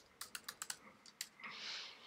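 Computer keyboard being typed on: a quick run of sharp key clicks as a short word is entered, then one more keystroke, with a soft hiss near the end.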